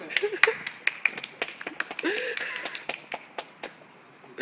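A quick, uneven run of sharp clicks and taps, several a second, mixed with brief snatches of men's voices.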